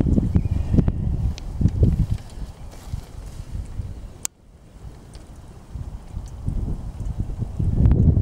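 Strong wind buffeting the camera microphone in uneven gusts. A sharp click about halfway is followed by a brief lull before the gusts build again.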